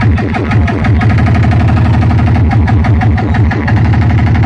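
Loud DJ music through large speakers, a stretch of heavy bass beats repeated in a rapid, even pulse.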